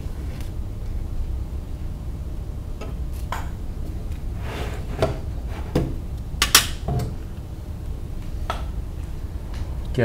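Scattered knocks and light clatter from a 3D printer's frame and cables being handled, tilted and set back down on a bench, about seven in all with the sharpest about six and a half seconds in, over a steady low hum.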